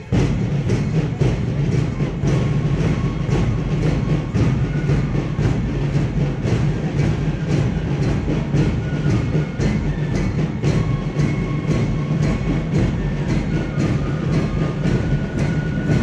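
March-past music driven by drums beating a steady, even marching rhythm, with a few faint held tones above the beat.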